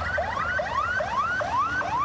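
Police siren in a fast yelp: quick rising sweeps that drop back and repeat about two and a half times a second.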